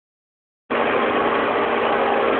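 Steady hum and hiss of an indoor ice rink, with a few even machine-like tones, starting abruptly about two-thirds of a second in after silence.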